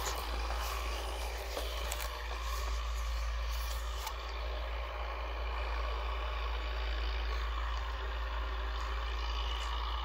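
A steady low rumble with a faint even hiss above it, broken only by a couple of light clicks about two seconds in.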